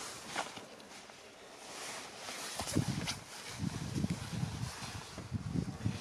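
A child climbing into a car's back seat: clothing rustling and rubbing against the seat, with a couple of light clicks and, from about halfway, a run of soft low bumps.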